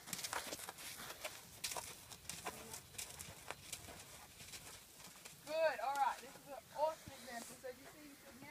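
Faint clip-clop of a Friesian horse's hooves at a walk, a string of irregular clicks. A voice speaks briefly about five and a half seconds in, and is the loudest thing heard.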